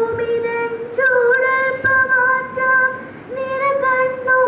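A girl singing solo into a microphone, holding long, steady notes, with a short breath break just before the three-second mark.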